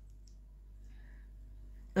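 A quiet pause holding a steady low hum, with a couple of faint clicks about a quarter second in and around a second in.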